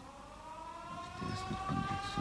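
A sustained tone with overtones, rising slowly and steadily in pitch. A low rhythmic patter joins it about a second in.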